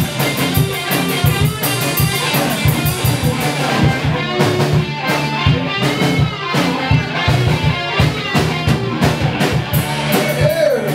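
Rock band playing an instrumental passage: electric guitars and bass over a drum kit keeping a steady beat.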